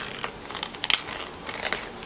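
A paper envelope sealed with decorative tape being torn open by hand: a few short crackling rips and crinkles of the paper, then a longer tearing rasp near the end.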